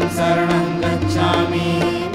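Harmonium playing sustained notes over steady hand-drum beats, an instrumental passage of Indian devotional music accompanying a Buddhist aarti.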